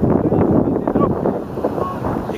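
Wind buffeting the camera microphone, with faint shouts of players in the distance.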